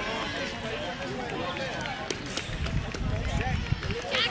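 Background chatter of several voices overlapping, players and spectators around a youth baseball field, with a low rumble of wind on the microphone.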